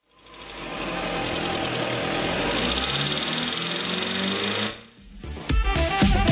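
Chrysler 200's 2.4-litre MultiAir four-cylinder engine idling steadily, with a fast even ticking. It fades in over the first second and stops about five seconds in.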